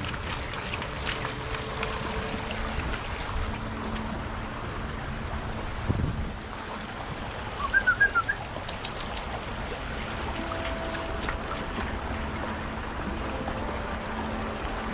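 Steady rush of a swollen creek running over rocks. About eight seconds in, a brief cluster of quick high chirps sounds over it.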